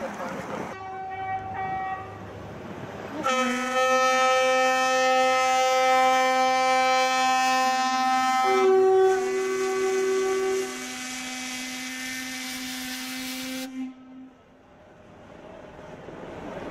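Ship's horns blowing. A short blast comes first, then a long blast of about ten seconds, with a second, higher-pitched horn joining for about two seconds near the middle.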